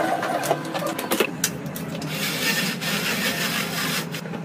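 Household handling sounds: a few light knocks and clicks of objects moved on a bedside table, then about a second of scratchy rubbing, as of wiping or handling items.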